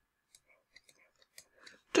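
A few faint, scattered clicks in an otherwise quiet pause, with a small cluster of soft noises just before speech resumes.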